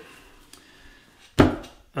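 A single sharp knock about one and a half seconds in, with a short ring-out, against a quiet room.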